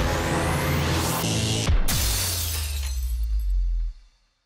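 Record label's logo intro sting: electronic sound design with sweeping pitch glides over a low bass hum, a sudden crash with a glassy shatter about 1.7 s in, then the sting cuts off abruptly just before the end.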